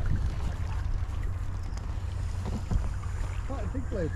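Steady low wind rumble on the microphone, with faint voices murmuring in the second half.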